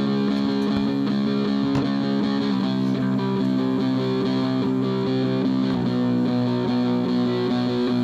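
Background music: a distorted electric guitar playing held notes that change every second or so, at a steady level.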